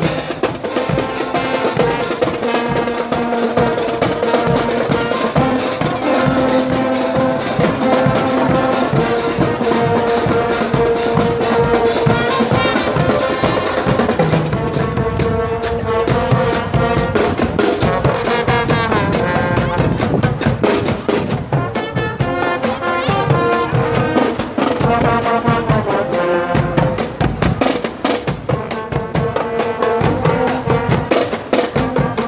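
Brass-and-percussion marching band (fanfarra) playing live: trumpets and trombones hold long sustained notes over a steady beat of snare drums, bass drums and crash cymbals.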